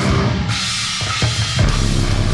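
Live heavy-metal band on stage, with the drum kit to the fore: bass drum, snare and cymbals. About half a second in, the guitars drop away, leaving mostly drums and crashing cymbals. A heavy low note brings the full band back in near the end.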